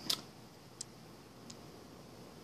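Three faint clicks spaced about two-thirds of a second apart, the first the loudest, over quiet room tone.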